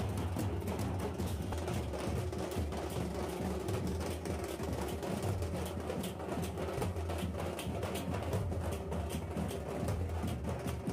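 A troupe of large steel-shelled drums beaten together with sticks in a fast, continuous rhythm, many strikes a second.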